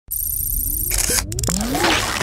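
Synthesized sound effects of a channel intro sting: a low rumble under a high warbling tone, then a burst of sharp clicks about a second in and several rising electronic glides.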